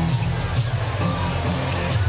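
Arena game sound during live basketball play: music over the arena speakers with a steady low bass, over crowd noise and a basketball being dribbled on the hardwood court.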